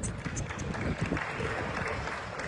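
Rumbling, thumping handling noise from a phone being moved with its lens covered, its microphone brushed, over the murmur of a stadium crowd.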